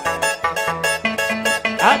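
Andean harp playing a fast Huaraz-style cumplimiento dance tune, with quick plucked notes over a steady bass line. A shout cuts in near the end.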